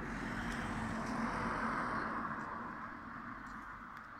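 A car passing along the street, its tyre and engine noise swelling to a peak about a second and a half in, then fading away.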